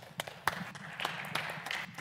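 Light, scattered applause from a small congregation, a patter of separate claps welcoming a speaker to the pulpit.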